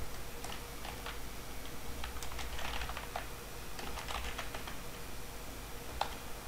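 Typing on a computer keyboard: about three short runs of keystrokes with pauses between, as text is entered into form fields.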